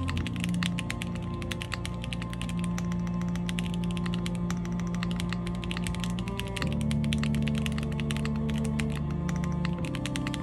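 Fast, continuous typing on an IRON165 r2 custom mechanical keyboard with stock WS Red linear switches in a polycarbonate plate, gasket-mounted, with GMK keycaps: a dense run of keystroke clacks. A song with sustained low chords plays underneath, changing chord about two-thirds of the way through.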